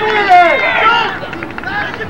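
Several people shouting and calling out at once, their voices overlapping, loudest in the first second.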